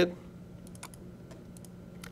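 A few faint, sharp clicks of a computer mouse as a folder is opened, over quiet room tone.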